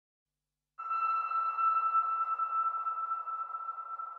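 A single steady, high, sonar-like tone from a film soundtrack starts abruptly just under a second in, then holds and slowly fades.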